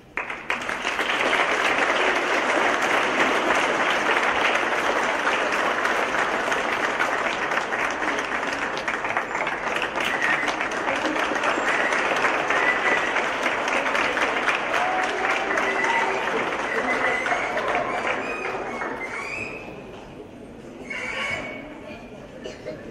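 Audience applauding steadily, starting right as the choir's singing ends and dying away after about nineteen seconds, with a few voices in the crowd near the end.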